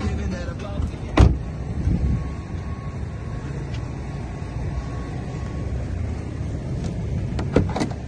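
A Volkswagen Touran's rear side door shut with one sharp knock about a second in, over a steady low rumble. Near the end come two quick clicks, like the tailgate latch being released.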